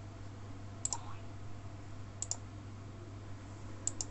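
Button clicks of a computer pointing device selecting items in an installer screen: three quick double ticks (press and release), about a second and a half apart, over a steady low hum.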